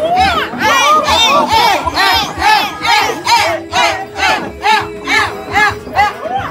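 A group of people shouting together in a fast rhythmic chant, high-pitched yells repeating about two or three times a second.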